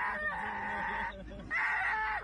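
Huskies howling in long, held howls. One breaks off about a second in and another begins about half a second later.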